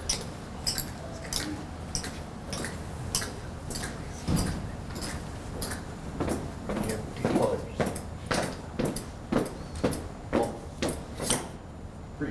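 Color guard marching in step on a hard floor: an even beat of footfalls with sharp heel clicks, about one and a half to two steps a second.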